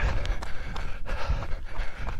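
A runner's footfalls thudding on a trail at running pace, with his heavy breathing and the bumping of a body-worn microphone.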